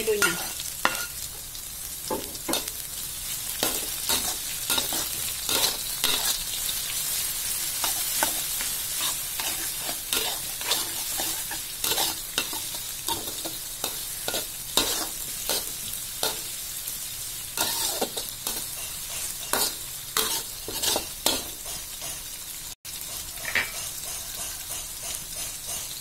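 Chopped tomato, chillies, shallots and garlic sizzling in hot oil in a wok. A metal spatula scrapes and knocks against the wok again and again as the mixture is stirred.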